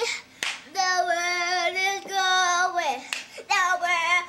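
A child singing long held notes: three sustained notes, each sliding down at its end, with short breaks between them.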